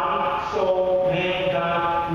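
A slow chant sung in long held notes, moving from pitch to pitch.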